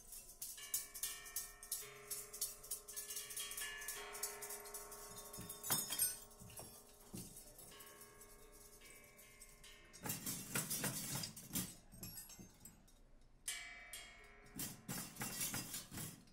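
Free-improvised percussion duet: overlapping ringing tones with light taps for the first half, giving way about ten seconds in to dense clattering strikes, which return near the end.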